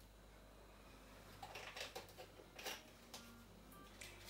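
Near silence: kitchen room tone with a low hum and a few faint clicks and knocks from handling the oil bottle and pan, about one and a half to three seconds in.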